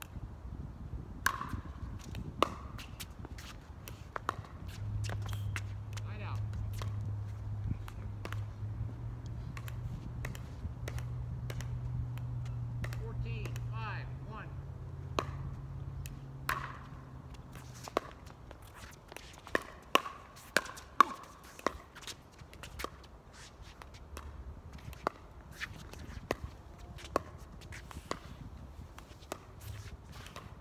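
Pickleball play on an outdoor hard court: sharp pops of paddles hitting a plastic ball, ball bounces and shoe scuffs, with a quick run of hits partway through. A low steady hum sits under the first half.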